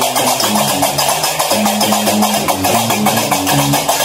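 Gnawa music: a guembri plucking a low, moving bass line over a steady, fast metallic clatter of qraqeb iron castanets.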